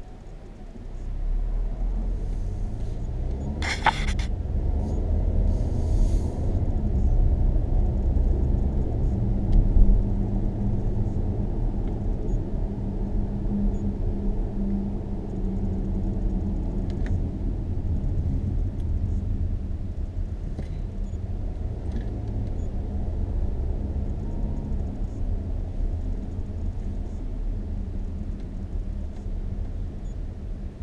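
Car engine and tyre rumble heard from inside the cabin while driving, a steady low drone with a hum. It rises sharply about a second in, and a brief sharp knock comes about four seconds in.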